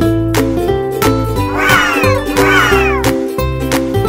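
Background music with plucked ukulele-like strings over a steady beat. About halfway in, two high arching cries sound over the music, one right after the other.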